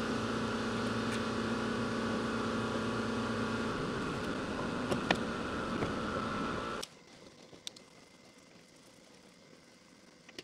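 A steady machine hum with a few fixed tones that cuts off suddenly about seven seconds in. Faint light metal clicks from screws being fitted by hand come through, plainer once the hum stops.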